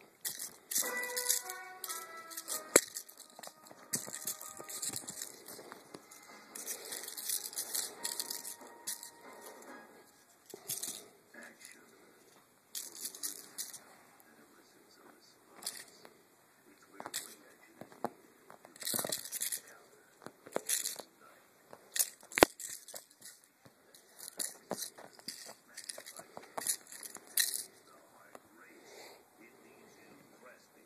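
Irregular bursts of rustling and scratching on fabric during rough play with a kitten, mixed with handling noise from the swinging camera. A brief run of musical notes sounds in the first few seconds, and a single sharp click comes about two-thirds of the way through.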